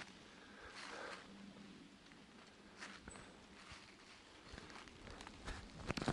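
Faint rustling and soft crunching of dry fallen leaves underfoot, with a few light scattered clicks that come more often near the end.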